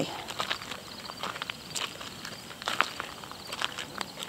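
Footsteps on a gravel path: an irregular series of short crunches and scuffs of shoes and small paws on loose stones.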